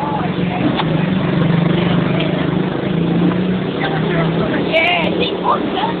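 Motor vehicle engine running close by, a low steady hum that shifts up and down in pitch a few times, with faint voices over it.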